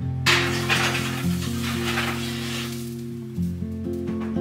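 A ceramic casserole dish pushed across a wire oven rack: a hissing scrape that starts suddenly and fades over about three seconds. Acoustic guitar music plays underneath.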